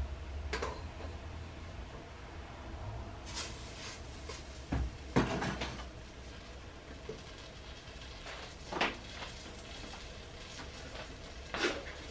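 Occasional knocks and clatters of kitchen utensils and containers being handled, a spatula against a tub and pot, the loudest about five seconds in, over a low steady hum.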